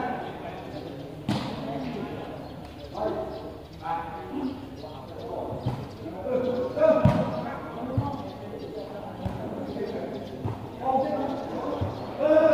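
Spectators talking and calling out, with several sharp thuds of a volleyball being kicked and headed in play.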